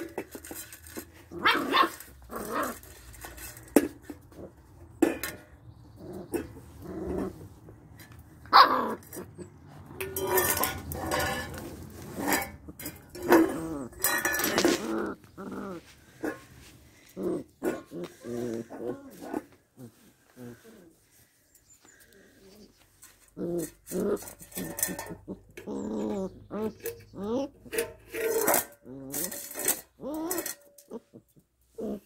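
Puppies growling and giving small barks and yips as they play, in many short bouts with a quieter spell about two-thirds of the way in.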